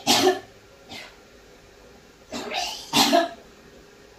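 A woman coughing hard in short fits: a double cough at the start, a faint one about a second in, and another double cough about two and a half seconds in. The coughing is brought on by the burn of an extremely hot chili candy.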